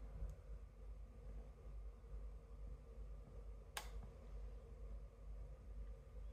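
Quiet, faint handling of a small camera, then a single sharp metallic click nearly four seconds in as the hot shoe of an Epson R-D1S rangefinder is levered with a tiny flathead screwdriver: the hot shoe's spring-held retaining tab popping up.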